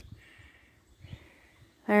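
Near silence: faint outdoor ambience in a pause, then a man's voice begins near the end.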